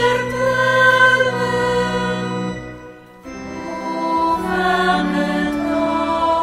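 Choir singing slow music in long held notes. The phrase dies away to a short pause about three seconds in, then the singing starts again.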